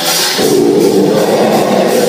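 Live metal band playing loudly: guitar strumming, joined about half a second in by a thicker, denser layer of the full band.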